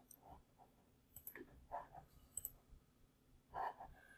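Near silence with a few faint, short clicks from a computer mouse as the software wizard is advanced.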